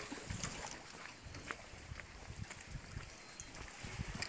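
Sea water surging and sloshing through a channel under lava rock, with irregular wind rumble on the microphone.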